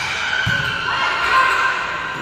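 A volleyball struck during a rally, a single thud about half a second in, over the steady noise of the crowd in a reverberant gymnasium.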